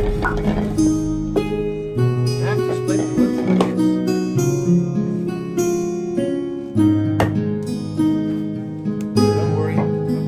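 Background music of plucked strings, a slow melody of held notes over changing bass notes.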